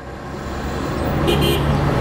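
A motor vehicle on the road passing close by, its engine hum and tyre noise growing steadily louder, with a brief high-pitched tone about a second and a half in.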